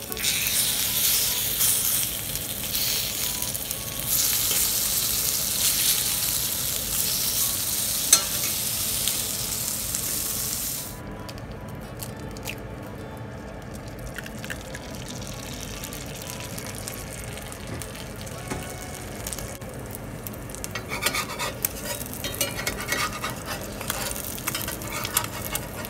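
Food frying in a cast iron skillet. Bacon strips sizzle loudly for about the first eleven seconds, with one sharp click about eight seconds in. Then the sound drops suddenly to a quieter sizzle of an egg frying in fat, with crackling and spatter growing near the end.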